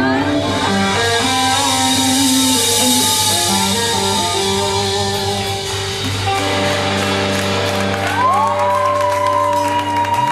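A live rock band with electric guitar, bass guitar and drums plays blues-rock, with cymbals ringing through the first half. Near the end, a note bends up and is held.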